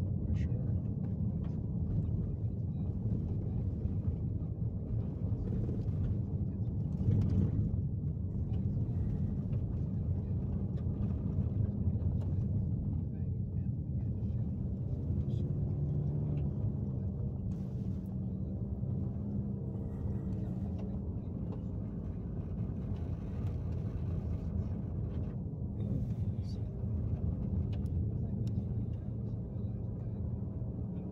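Road noise inside a vehicle's cabin while driving on a rough dirt two-track: a steady low rumble of engine and tyres, with scattered small knocks and rattles.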